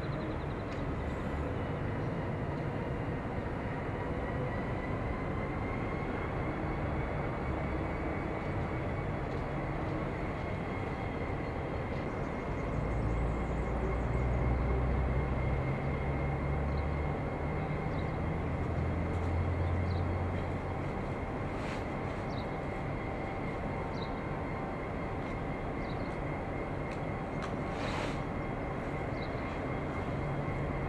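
EMD two-stroke diesel engine of 81 class locomotive 8168 running, with a steady high whine over the low engine note. Roughly midway the engine gets louder and deeper for several seconds, then drops back to its earlier level.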